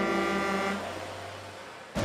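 Trailer soundtrack: a deep, horn-like held chord fades out under a second in over a wash of road noise, and a low boom hits at the very end as the title appears.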